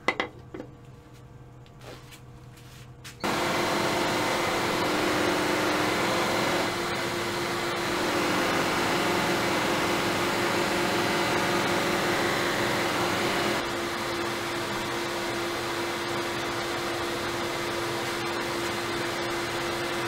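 Wood lathe switched on about three seconds in, spinning a cloth buffing mop with the back of a wooden platter held against it: a steady whir with a hum that shifts in loudness a few times as the work is pressed on and eased off.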